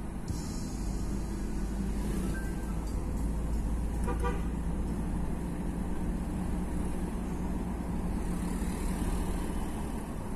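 Steady engine and road rumble inside a moving car's cabin. About four seconds in, a vehicle horn gives a short toot.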